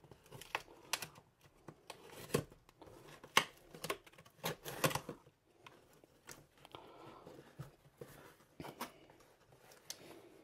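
A Spyderco Delica 4 folding knife slicing through packing tape on a cardboard shipping box: a series of irregular sharp scrapes and snicks. Then the cardboard flaps are pulled open and handled, with rustling.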